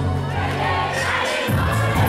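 A concert crowd singing and shouting along over a live band's music. The bass cuts out for a moment about one and a half seconds in, then comes back.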